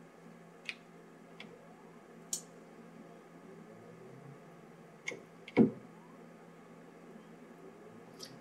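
Keys pressed on a grandMA2 lighting console: a few faint clicks and one sharper knock about five and a half seconds in, over a low steady hum.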